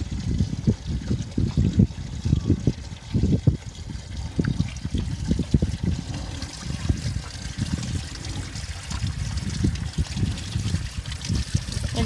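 Calves drinking from a plastic stock tub, sucking the water down with a quick, irregular run of wet slurps and gulps.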